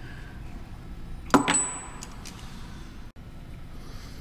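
A single sharp metal-on-metal clink about a second in, ringing briefly with a thin high tone, over low shop background noise. It comes from a hand tool against the cylinder head as an easy-out extractor is being used on a broken bolt.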